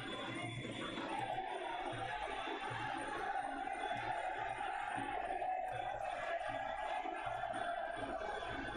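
Sarama, the live Muay Thai ring music: a Javanese oboe (pi java) holding a wavering, reedy line over steady drum beats, with crowd noise underneath.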